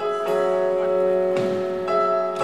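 Instrumental keyboard music: sustained piano-like chords, with new notes struck near the start, around the middle and near the end.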